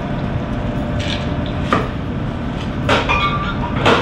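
Glass liquor bottles knocked and set down on a bar counter: four separate knocks, the one about three seconds in with a short glassy clink, over a steady background hum.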